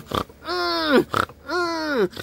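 A comic voice making two drawn-out calls, each about half a second long and sliding down in pitch, as a mock 'singer's' performance.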